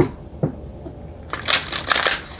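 A deck of oracle cards being handled and shuffled by hand: two short taps, then a quick rustling run of shuffling from about one and a half seconds in.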